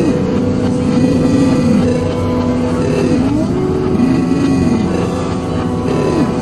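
Dense, layered experimental electronic music: held drone tones stacked on one another, with lower tones that swoop up and back down in arcs about every second and a half.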